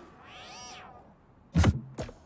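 Advert sound effects: a short pitched sound that swoops up and back down, then a loud, sharp hit about one and a half seconds in.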